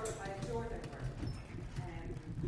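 Indistinct voices talking in a room, over irregular light knocks and clatter.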